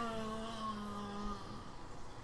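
A man's voice holding one steady note, a drawn-out hum, fading out about a second and a half in, then faint room tone.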